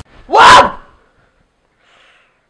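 A boy's loud, sharp gasp, about half a second long and falling in pitch, as he wakes with a start from a nightmare.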